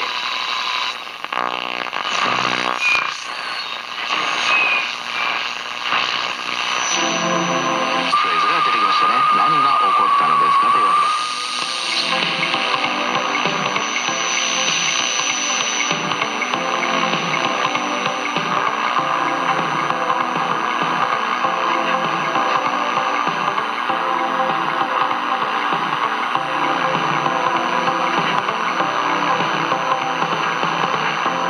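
AM broadcast reception through the loudspeaker of a homebuilt 6AQ7 vacuum-tube radio while it is being tuned up the band. There are a few seconds of broken-up sound and a wavering whistle lasting about three seconds, then a station playing music from about twelve seconds in.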